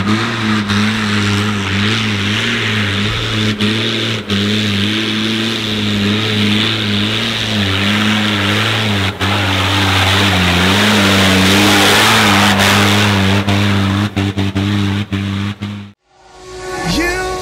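Engine of a modified off-road 4x4 labouring under load as it climbs a steep muddy track. The engine note wavers up and down with the throttle and grows louder toward the middle of the climb, with a few sharp knocks near the end.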